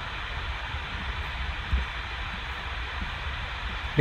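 Room tone: a steady hiss with a low hum underneath, with one faint short sound a little under two seconds in.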